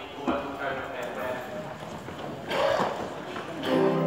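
Indistinct low voices with scattered knocks and shuffling, then a church organ starts a held chord just before the end.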